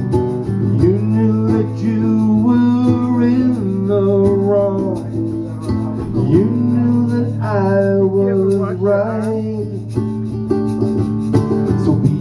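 Live acoustic-electric guitar strumming chords, with a hand shaker keeping time, in a slow country-style love song.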